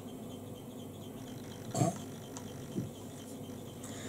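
Quiet room with two brief soft clicks or taps, the louder one a little under two seconds in and a fainter one about a second later.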